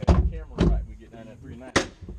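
A side-by-side UTV's door being shut, with heavy thuds at the start and about half a second in, and a sharp knock near the end.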